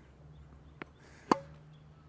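A tennis ball struck by a racket on a one-handed topspin backhand: one sharp pop with a short ring of the strings, just after a fainter tick.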